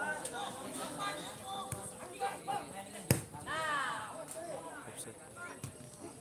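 Open-air football match sound: players' voices calling across the pitch, with one sharp thud of a ball being kicked about three seconds in, followed by a shout.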